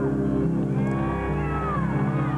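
Live steel-string acoustic guitar ringing with sustained low notes, while high gliding cries rise and fall over it.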